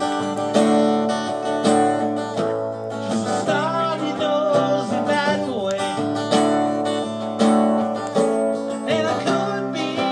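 Acoustic guitar strummed steadily in a live solo performance, with a man's singing voice coming in over it at intervals.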